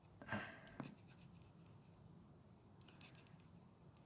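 Faint scratching and small clicks of an applicator being worked in a small plastic pot of glitter gel, with one short louder sound just after the start; otherwise near silence.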